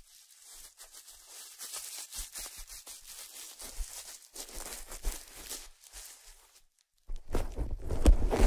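Plastic bubble wrap being crinkled and squeezed by hand close to the microphones: a fine, crackly rustle of many small clicks. About seven seconds in it stops briefly, then comes back louder and fuller.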